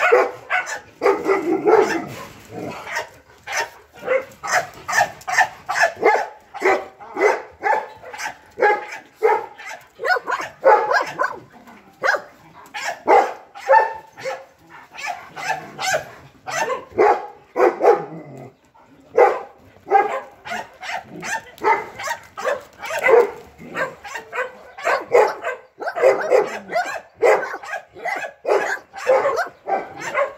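Dogs barking repeatedly, a few short barks a second with brief pauses, keeping on throughout.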